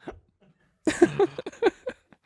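A man laughing in four or five short, quick bursts, starting about a second in.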